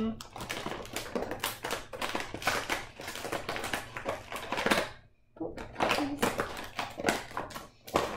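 Scissors snipping and a toy's plastic blister pack crinkling as it is cut open: a dense run of irregular clicks and crackles, breaking off briefly about five seconds in.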